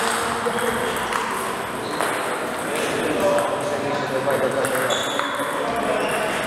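Table tennis rally: the ball ticking back and forth off the rackets and table, over a steady background of voices.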